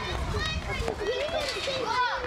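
Children playing outdoors, several young voices calling and chattering over one another, over a steady low rumble of outdoor background noise.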